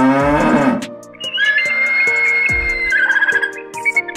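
A cow mooing, its call rising in pitch and ending within the first second. Then a hawk's drawn-out high screams, two calls in a row, over background music.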